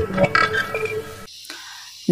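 Short news-bulletin transition sting under a spinning-globe graphic: a sharp hit, then a brief run of musical tones that stops about a second and a quarter in, leaving faint hiss.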